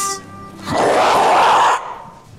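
A man blowing his nose hard into a paper tissue: one noisy blast of about a second that starts and stops sharply, after the last held notes of a music jingle fade out.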